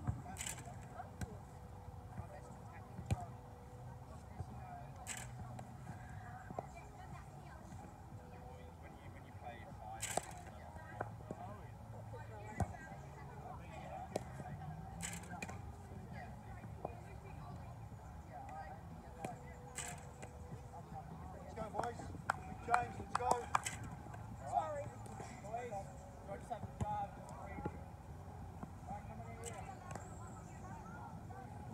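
Scattered sharp knocks of a cricket ball in a wicketkeeping drill: the ball struck off a rebound net and taken in the keeper's gloves, with several in quick succession a little over two-thirds of the way through. Faint voices in the background.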